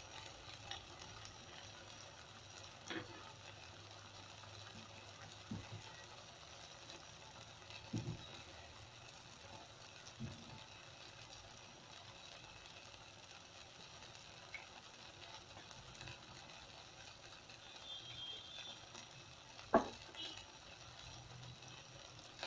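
Faint, steady sizzle of soya chunks, green peppers and onions cooking in a wok, with a few soft knocks scattered through, the loudest near the end.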